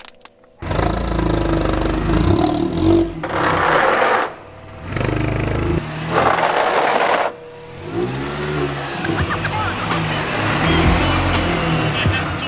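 Mini Cooper S R53's supercharged four-cylinder engine running and revving in short edited clips, its note rising and falling about eight seconds in.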